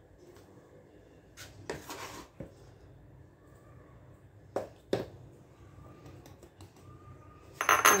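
Scattered light taps and clinks of a plastic scoop against a stainless mesh sieve and plastic bowls as flour is added for sifting, the sharpest pair coming about halfway through.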